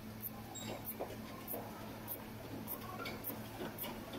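Exercise bike in use: its moving parts squeak and tick about twice a second in time with the pedal strokes, over a steady low hum.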